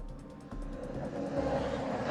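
Road traffic passing close by, with trucks among the vehicles: a steady noise of engines and tyres that grows louder through the second half.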